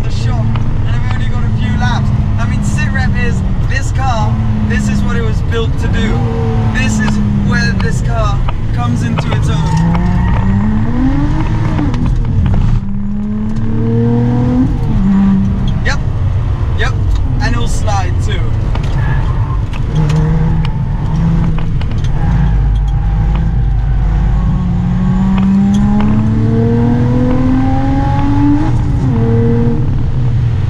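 Supercharged 3.5-litre V6 of a Lotus Exige 380, heard from inside the cabin under hard track driving. The engine note climbs through the revs and drops sharply at each gearshift, with one long pull ending about 13 s in and another near the end.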